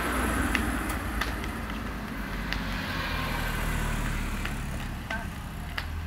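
Street traffic noise, a steady low rumble from road vehicles, with a few light, irregular footsteps on the pavement.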